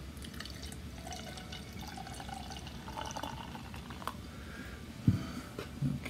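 Beer poured from a brown glass bottle into a glass, glugging and fizzing as the glass fills and a foamy head forms. A single thump comes about five seconds in.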